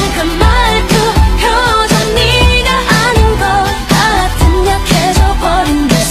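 Pop song with a singer's voice over a steady drum beat and bass, played loud as dance music.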